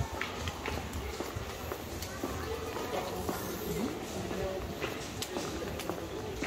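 City street ambience: footsteps on a paved sidewalk with indistinct voices of passers-by.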